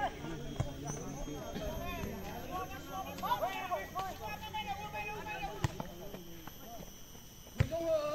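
Voices of players and spectators calling out and talking across an open football pitch, with a few sharp knocks; the loudest comes near the end.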